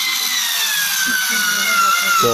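Cordless screwdriver's motor whining while driving a wood screw into a board, its pitch sinking slowly as the screw goes in. The tool runs on a newly fitted lithium-ion battery pack in place of its original nickel-cadmium cells.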